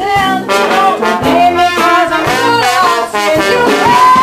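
Small traditional jazz band playing live, trumpet and trombone leading over sousaphone, archtop guitar and drums.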